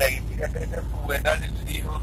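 Steady low rumble of a moving car's engine and tyres heard inside the cabin, under a man's voice speaking.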